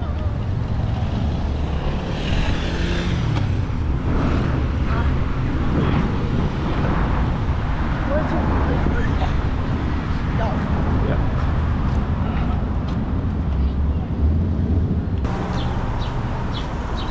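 Cars passing on a busy city street: a steady traffic noise of engines and tyres.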